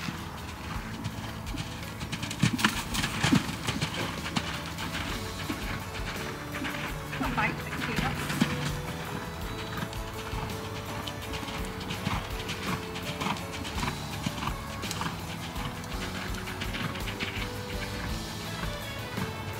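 Background music over the hoofbeats of a ridden horse moving round a soft arena surface.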